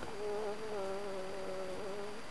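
A woman's long, high, wavering wail held on nearly one pitch, a crying cry from deep in a primal therapy feeling session.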